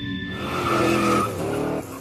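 Logo sting sound effect of a car: an engine note with a tyre squeal, mixed with music, cutting off suddenly near the end.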